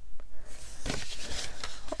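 Folded cardstock pieces being handled and brought together on a craft mat: several light taps and paper rustles.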